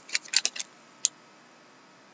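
Trading cards and a torn foil wrapper handled in the hands: a quick run of sharp clicks and crinkles as the cards are slid and flicked apart, one more click about a second in, then quiet.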